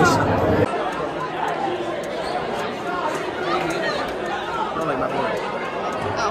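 Indistinct chatter of many people talking at once in a large hall. A man's voice ends in the first second, and the babble goes on steadily after it.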